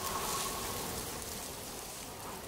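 A steady, rain-like hiss that comes in abruptly and slowly gets a little quieter.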